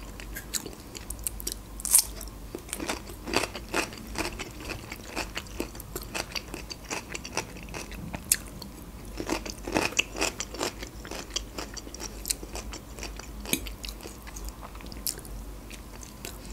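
Close-miked chewing and biting of stuffed bell peppers and fresh cucumber: wet mouth sounds broken by irregular crisp crunchy clicks, the sharpest about two seconds in.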